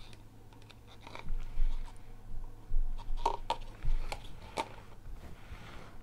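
A handful of short, sharp clicks and taps from painting tools being handled and put down and a canvas being gripped, with a faint steady low hum underneath.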